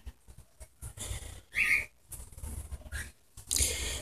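Motor oil pouring from a plastic bottle through a funnel into an engine's oil filler, heard as faint, uneven gurgles with short gaps. A brief high whistle-like tone sounds about a second and a half in.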